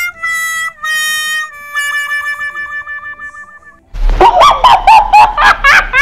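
Comedy sound effects added in editing. First come four stepped notes going down, the last one held long and wavering like a mocking 'wah-wah'. About four seconds in, a loud quick run of springy up-and-down pitch glides starts, about three a second, over a low hum.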